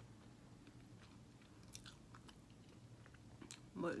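Faint chewing: small wet mouth clicks of someone eating a mouthful of Chinese takeout, scattered through the pause.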